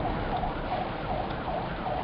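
A faint siren wailing up and down over the steady rumble of a car interior in slow traffic.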